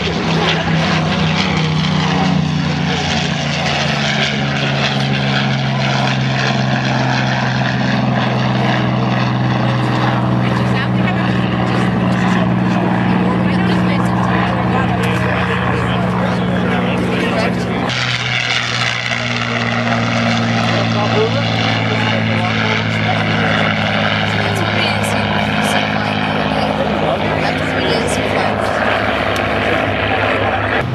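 Piston-engined propeller fighter plane flying by at full power: a loud, steady engine-and-propeller drone with a strong low hum. Its tone shifts a little past the halfway mark.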